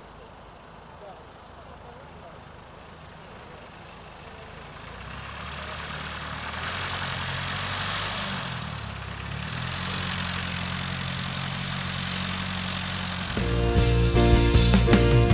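A de Havilland Tiger Moth's four-cylinder Gipsy Major engine and propeller as the biplane taxis on grass. The sound grows louder from about four seconds in, is loudest around eight seconds as the aircraft turns close by, then settles into a steady running note. Music cuts in just before the end.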